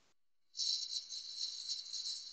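A turning tool cutting the spinning wooden stem of a goblet on a wood lathe, heard as a steady, high-pitched, slightly rattling hiss. It starts about half a second in, after a brief moment of dead silence.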